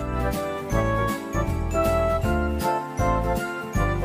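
Background music that starts suddenly: a bright, tinkling bell-like melody over bass notes, with a regular beat.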